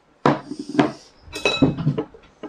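Ceramic bowls and plates knocking on a wooden dining table and clinking together, with chopsticks tapping against the dishes; a serving bowl set down starts it, and a short ringing clink comes about one and a half seconds in.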